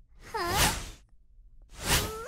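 Two cartoon whoosh sound effects. The first swells and fades about a third of a second in, with a wavering tone inside it; the second rises sharply near the end.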